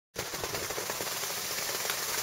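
Skis or board sliding over packed snow: a dense, even crackle of rapid small clicks and scraping that starts abruptly.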